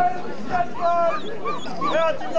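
A dog yapping and whining in a string of short, high calls over crowd chatter.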